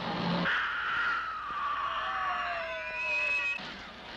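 A woman's long, high-pitched scream, slowly falling in pitch, with a shriller cry joining near the end before it cuts off.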